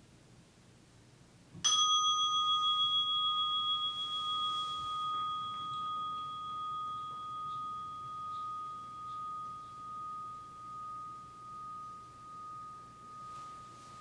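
A meditation bell struck once about a second and a half in, ringing on in one clear tone with a slow, even waver as it fades; it marks the end of the meditation period.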